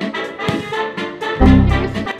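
Background music with brass and a steady beat. About one and a half seconds in, a loud low boom lasts about half a second.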